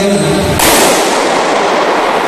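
A small explosive device set off on the gym floor: one sudden bang about half a second in, followed by a long echoing decay in the large hall.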